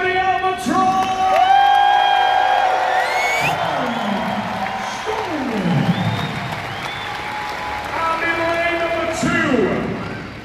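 Arena announcer over the PA, drawing out one long held call as he introduces a strongman finalist, while the crowd cheers and applauds. Announcing speech resumes near the end.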